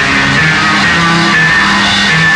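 Loud noise-rock music: a guitar playing a run of held notes that change pitch every half second or so, over a dense noisy wash.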